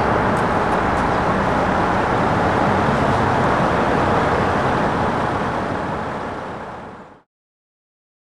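Steady road-traffic noise from vehicles on an elevated highway, fading out over the last couple of seconds into silence.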